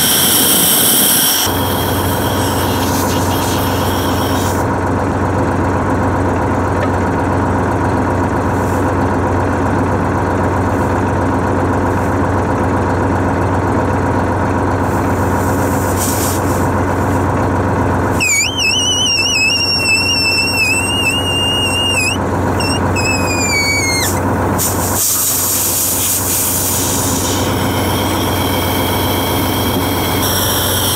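A 1963 Flxible bus engine idling steadily with its air system under pressure. Compressed air hisses from a leak near the start and again near the end, and a wavering high whistle comes and goes in the middle.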